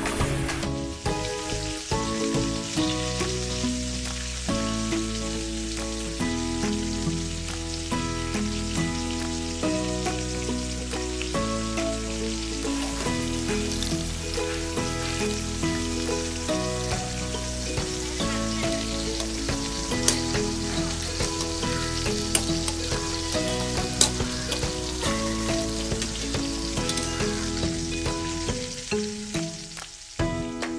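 Pazhampori, batter-coated ripe banana fritters, frying in a pan of hot oil with a steady sizzle, under background music with bass notes. A few sharp clicks come about two-thirds of the way through.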